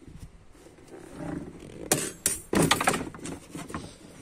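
Wooden OSB bed boards and the hard plastic load cover being moved about in a car's boot: a low scraping rumble, then a run of sharp knocks and clattering about two seconds in.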